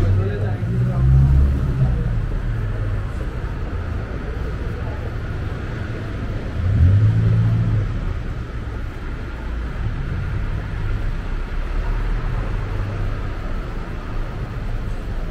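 City street traffic: cars passing with a low rumble, swelling louder about a second in and again around seven seconds, with voices of people nearby.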